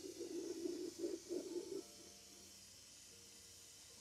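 Faint steady hiss of an airbrush spraying. A low, muffled murmur runs under it for the first couple of seconds, then stops.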